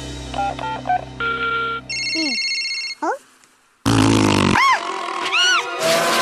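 Cartoon sound effects: a mobile phone's electronic beeps and a pulsed ringing tone, then falling and rising whistle-like glides. After a short pause comes a loud noisy crash with swooping, arching tones.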